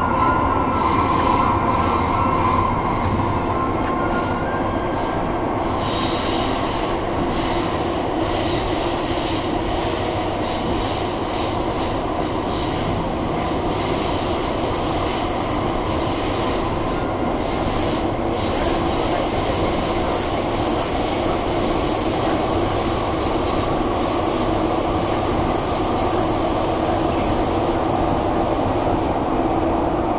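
Running sound heard inside a Heathrow Express Class 332 electric train in its tunnel: a steady rumble of wheels on rail, with high-pitched wheel squeal from about six seconds on.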